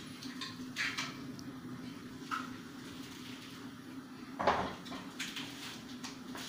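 Light clinks and rustles of a round steel tin being handled, with a louder knock about four and a half seconds in, over a steady low hum.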